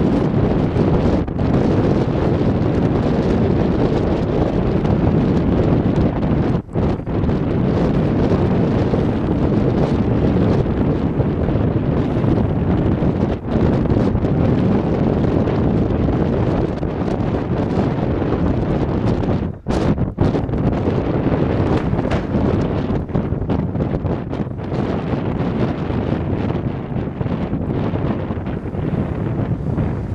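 Strong wind buffeting the microphone: a loud, steady rushing, with a few short dips in level.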